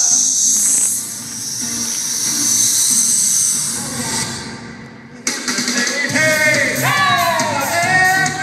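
Show music with singing in a large hall. A bright, cymbal-like wash fills the first half, the music drops away briefly about five seconds in, then comes back with a singing voice.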